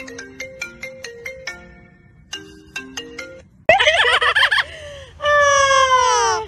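A phone ringtone plays a quick plinking, marimba-like tune, breaks off, and starts again. About 3.7 s in it cuts to a much louder amazon parrot call with a rapidly wavering pitch, then a long loud call that falls in pitch near the end.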